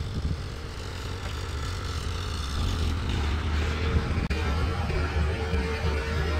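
Low, steady rumble of a vehicle engine running, with a faint steady tone coming in about halfway through.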